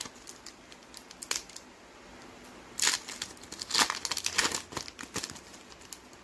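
Foil wrapper of a Pokémon card booster pack crinkling in several short crackly bursts as it is torn open by hand, loudest about three and four seconds in.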